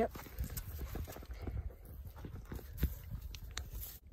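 Small trout flopping on dry grass and rock, a run of irregular slaps and taps, with wind rumbling on the microphone.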